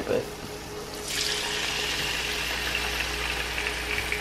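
Marinated chicken thigh laid into hot oil in a nonstick frying pan, starting to sizzle about a second in and sizzling steadily after.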